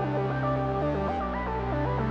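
Background music: a quick stepping melody over held bass notes that change about a second in.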